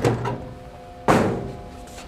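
A single sharp thunk about a second in as a black box-shaped part is lifted out of a three-knife book trimmer's opening and knocked or set down, over a faint steady machine hum.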